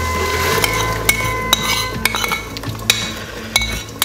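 A spoon scraping and tapping against a bowl and the rim of an aluminium pot as blended tomato purée is emptied into it; a string of sharp clinks, roughly one every half second.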